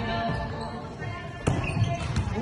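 One sharp smack of a volleyball about one and a half seconds in, over faint voices in a large sports hall.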